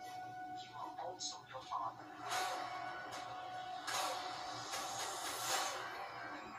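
Movie trailer soundtrack playing from a laptop: music with a held tone under snatches of voices, and three swells of rushing noise about two, four and five and a half seconds in.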